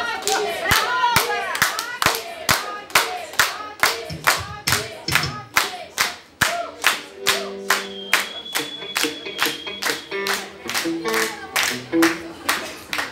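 Audience clapping in time, about two to three claps a second, with voices over the first second. From about seven seconds in, a few held guitar notes sound over the clapping.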